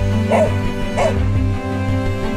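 A dog barks twice, two short barks about two-thirds of a second apart, over background music.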